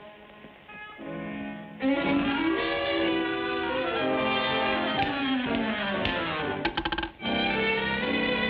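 Orchestral cartoon score led by strings: soft for about the first two seconds, then fuller with running melodic lines. A quick rattle of sharp strikes sounds about seven seconds in, just before the music briefly drops out and picks up again.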